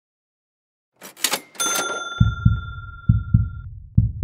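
Intro logo sound effects: a quick whoosh about a second in, then a bright chime that rings for about two seconds, over a heartbeat effect of paired low thumps, about one pair every second.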